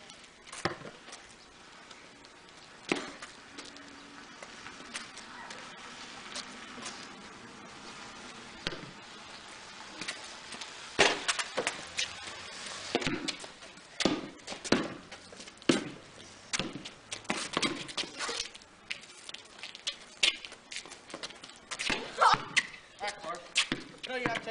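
A basketball bouncing on a concrete driveway: scattered dribbles at first, then steadier, quicker bouncing from about halfway through.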